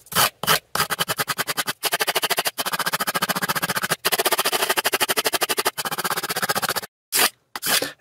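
Steel folding-knife blade stropped on the edge of a strip of corrugated cardboard, a rapid run of short dry scraping strokes, many a second, with a few brief pauses and a longer break near the end. The strokes are edge-trailing, refining and straightening the freshly sharpened edge without removing steel.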